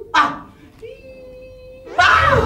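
A man's voice: a short loud exclamation just after the start, then a softer held note lasting about a second.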